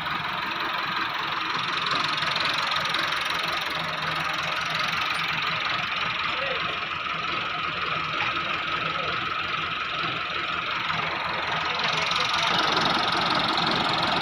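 Tractor diesel engine idling steadily, a little louder near the end.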